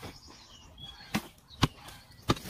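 Mattock blade chopping into hard, dry earth: two sharp strikes about half a second apart in the second half, part of a steady digging rhythm.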